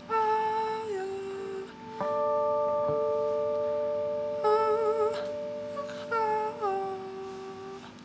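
A woman's voice singing a wordless vocalise in long held notes with vibrato, sliding down between some of them. Underneath, a hollow-body electric guitar through an amplifier plays a note about two seconds in that rings on for several seconds.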